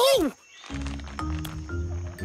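A short cartoon character's vocal cry with a falling pitch, then background music with low sustained notes from just under a second in.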